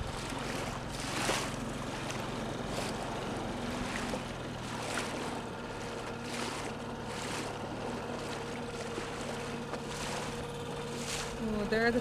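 Small dinghy outboard motor running steadily at low speed, with water splashing along the hull and some wind on the microphone.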